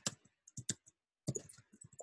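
Computer keyboard typing: a quick, irregular run of faint key clicks as a short phrase is typed.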